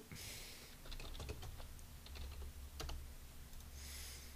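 Faint typing on a computer keyboard: a run of scattered, uneven key clicks.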